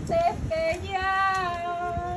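A woman singing a Spanish Marian hymn solo, a single voice holding long, drawn-out notes.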